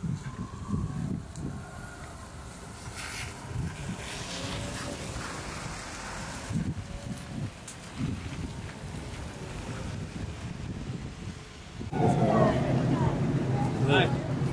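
Street traffic going by, with a car passing and wind on the microphone. About twelve seconds in it gives way to a louder stretch of voices over a steady low hum.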